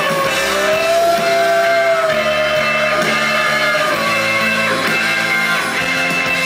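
Live indie-folk band playing an instrumental passage between sung lines, led by guitar. A long held melodic note sits above the band in the first two seconds.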